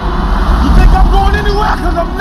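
Car engines running with a heavy, steady low rumble as police cars sit in the street, with indistinct voices over it.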